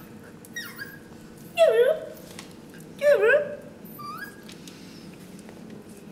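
A dog whimpering: four short, high whines that bend up and down in pitch, the loudest two about two and three seconds in.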